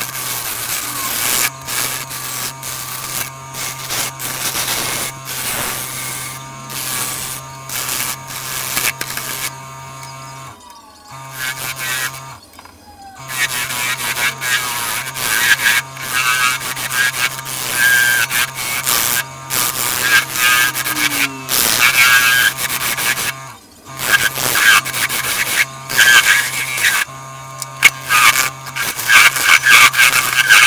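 A wood lathe motor hums steadily while a turning tool cuts into a spinning sycamore log to true it round. The cutting is a rough, repeated tearing of shavings that stops for a couple of seconds around ten to thirteen seconds in, and again briefly near twenty-four seconds, when the tool comes off the wood.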